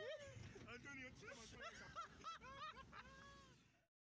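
Several people talking and laughing over one another, fairly faint, cutting off suddenly just before the end into silence.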